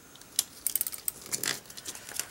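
Small plastic clicks and ticks from a Tombow Stamp Runner dot-adhesive tape runner being worked by hand while its new refill is tightened to take up the tape: one sharper click, then a run of small quick clicks.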